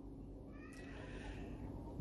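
Low room tone with a faint pitched animal call lasting about a second, starting about half a second in.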